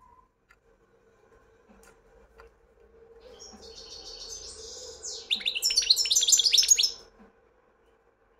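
European goldfinch singing one song phrase: a high, buzzy trill starting about three seconds in, then a louder run of rapid notes that stops about a second before the end.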